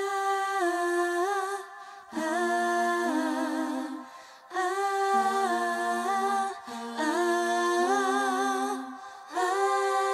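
Wordless a cappella singing: several female voices holding and stepping between sustained notes in close harmony, with no instruments. It comes in phrases of about two seconds with short breaks between, four in all and a fifth starting near the end.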